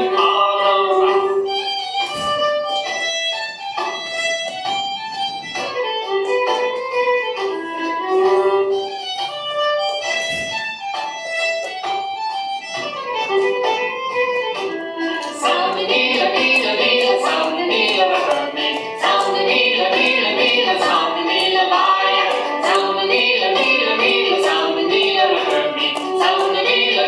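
Scottish dance tune led by a fiddle, the accompaniment filling out and getting a little louder about fifteen seconds in.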